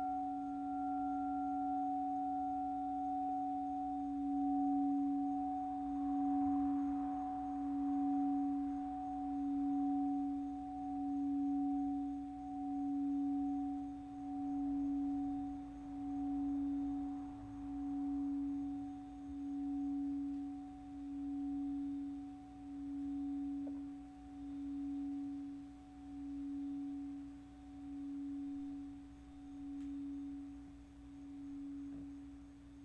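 Crystal singing bowl struck once with a mallet, then ringing on one pure low tone with a faint higher overtone. The tone swells and ebbs about every second and a half while slowly fading.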